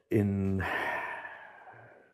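A man's voice draws out the word "in" and trails into a long, audible sigh that fades away over about a second and a half, a hesitant pause while he searches for words.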